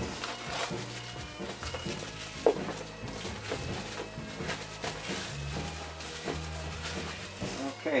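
Background music with steady sustained bass notes, over the crackle and rustle of a plastic bag and a cardboard model-kit box being handled and opened. One sharp click about two and a half seconds in.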